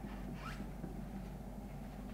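Quiet room tone with a steady low hum, and one brief rising squeak about half a second in.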